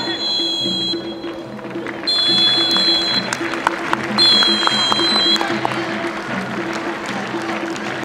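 Referee's pea whistle blown in three long blasts: the full-time whistle ending the match.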